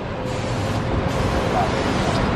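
Steady outdoor rumble of road traffic and vehicles, with a faint voice briefly near the end.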